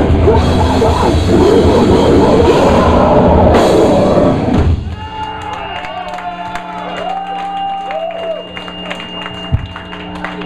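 Death metal band playing live, with distorted electric guitars, bass and drum kit, the song stopping abruptly about five seconds in. After the stop, a steady amplifier hum and a few ringing, wavering guitar tones carry on at a much lower level.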